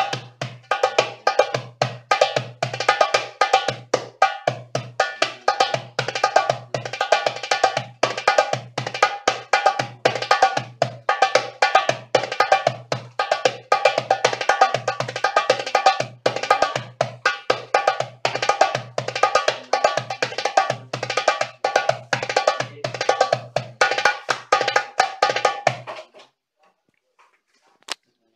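Darbuka (goblet drum) played by hand: a fast, continuous rhythm of deep bass strokes and sharp, ringing higher strokes, running the four practice patterns through in a row. The drumming stops about two seconds before the end, followed by one small click.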